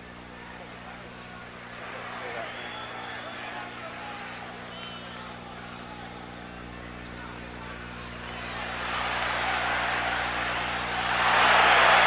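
Arena crowd noise, a haze of many voices at a boxing match, swelling about eight seconds in and louder still near the end, over a steady low hum from the old broadcast recording.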